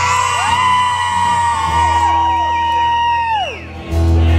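Women in the crowd whooping: one long high "woooo" held for about three seconds, falling off near the end, with shorter yells overlapping it.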